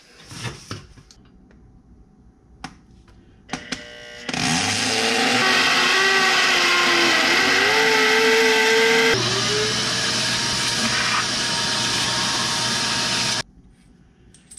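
Corded electric drill boring anchor holes into a concrete garage floor through the holes of a steel winch mounting plate. It runs for about nine seconds, its whine dipping and rising under load, then stops suddenly. A few light clicks of handling come before it starts.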